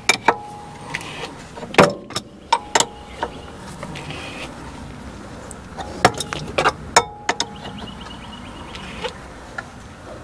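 Scattered metal clicks and knocks of a wrench and hands working at an engine's mechanical cooling fan as it is threaded onto the water pump shaft. The taps come in small clusters, with a steady low background between them.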